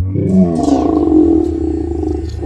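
A man's loud, drawn-out scream-roar in imitation of a ghost monster charging, held as one unbroken cry over a deep steady rumble.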